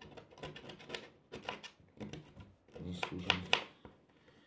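Light clicks and rubbing from small hard objects being handled close to the microphone, mixed with a few murmured, unclear words.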